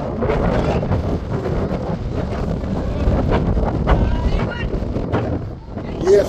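Wind buffeting the microphone with a heavy, steady rumble, and faint distant voices calling out over it.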